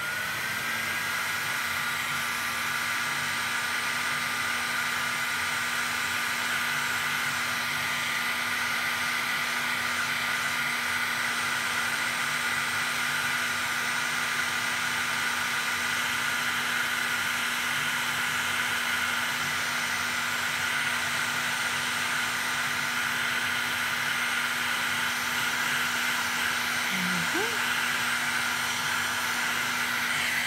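Heat gun switched on and running steadily, a constant rush of blown air with a steady fan whine, used to shrink heat-shrink tubing over a small electronics assembly.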